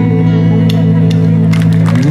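Live rock band holding a sustained chord on electric guitars and bass, ringing steadily at the close of the song. A few short, sharp sounds come in over it in the second half.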